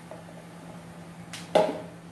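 A single clank of kitchenware with a short ring about one and a half seconds in, over a steady low hum.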